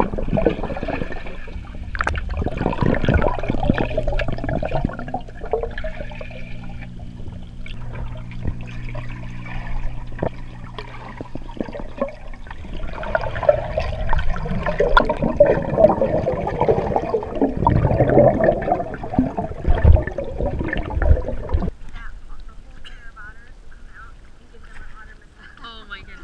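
Muffled underwater noise of swimming-pool water rushing and sloshing around a submerged camera as otters swim close by. A steady low hum sits under it for several seconds. About 22 seconds in the noise drops off suddenly and turns much quieter as the camera comes out of the water.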